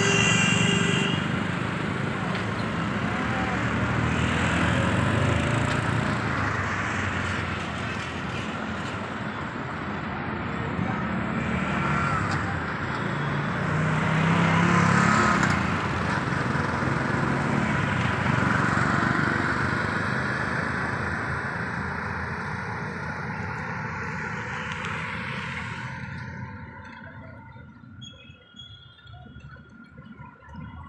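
Steady road-traffic noise from a busy city street, engines and tyres blending into a swelling and ebbing rumble, with a brief vehicle horn at the very start. The traffic noise fades away over the last few seconds, leaving a few faint high steady tones.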